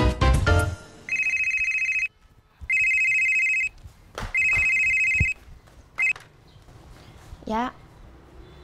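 A short burst of music ends, then a landline telephone rings with an electronic ring: three rings of about a second each, evenly spaced, and a fourth cut short about six seconds in as the call is answered.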